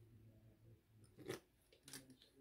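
Faint handling of a small plastic hand-soap bottle, with a sharp click a little over a second in and a softer click near the end.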